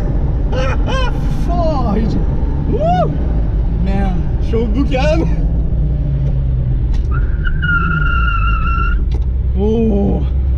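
Steady low rumble of the Jetta Mk1's 3.6-litre VR6 engine and drivetrain, heard from inside the stripped, roll-caged cabin as the car rolls along, under excited laughing and whooping. Near the end a steady high beep sounds for about two seconds.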